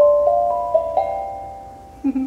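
Small white steel tongue drum struck with a mallet, a quick run of single notes about four a second. The last note is struck about a second in, and the notes ring on together and fade slowly.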